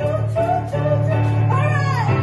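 A woman singing with keyboard accompaniment. Near the end her voice slides up and back down in a short vocal run.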